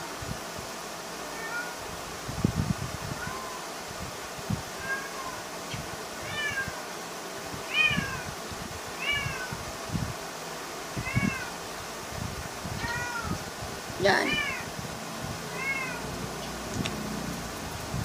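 A cat meowing repeatedly, about ten short high calls that each rise and fall in pitch, roughly one every second or two, with soft knocks underneath.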